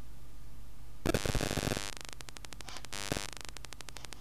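Steady electrical mains hum. A loud burst of buzzing static comes in about a second in and a shorter one just before three seconds, with a fast, even pulsing buzz between and after them.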